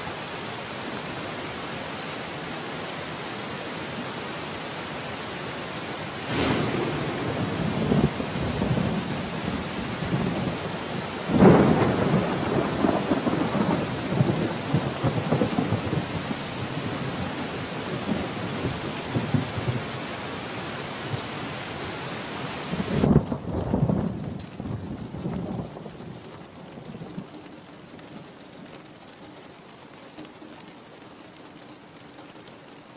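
Steady rain with rolling thunder: three long rumbles, about six seconds in, about eleven seconds in (the loudest) and about twenty-three seconds in. The rain hiss thins suddenly after the last rumble and the sound fades toward the end.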